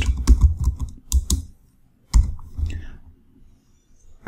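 Typing on a computer keyboard: a quick run of keystrokes for the first second and a half, then a few separate key presses, stopping a little past two seconds in.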